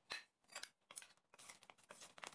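Wooden salad servers tossing a chopped salad in a bowl: soft irregular clicks of wood on the bowl and wet rustling of the vegetables, coming faster in the second half.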